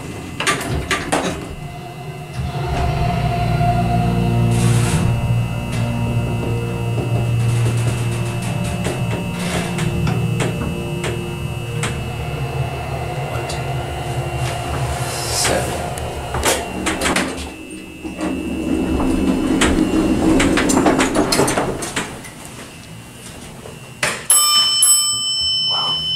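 Amtech hydraulic elevator's pump motor running through the ride with a steady low hum and a whine of several held tones, changing in sound a few seconds before the end as the car slows and levels. Near the end the car's arrival bell rings.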